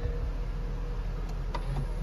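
Nissan Juke 1.6 petrol four-cylinder engine idling, a steady low hum heard from inside the cabin, with a couple of faint clicks.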